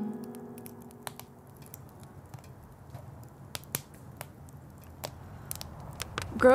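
An acoustic guitar chord rings out and fades, leaving a wood fire in a fire pit crackling quietly with scattered, irregular sharp pops.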